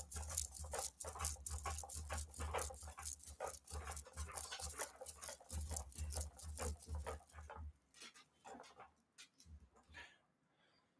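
Rapid run of rustles and knocks from a man moving vigorously in an office chair close to a desk microphone, dying away about eight seconds in.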